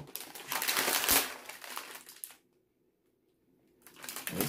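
Plastic wrapper of an Oreo cookie pack crinkling as it is handled and opened, with a few sharper crackles; it cuts off abruptly a little past halfway.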